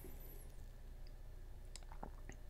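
Quiet room tone with a steady low hum and a few faint, short clicks, the clearest a little past halfway.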